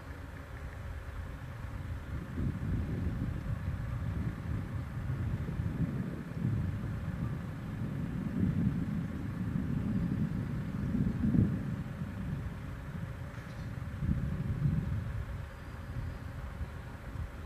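Wind buffeting the microphone: an uneven low rumble that swells and fades in gusts, strongest in the middle of the stretch.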